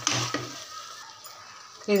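Ground masala paste sizzling as it fries in groundnut oil in a pressure cooker pot, stirred with a metal slotted spoon. The soft sizzle slowly grows quieter.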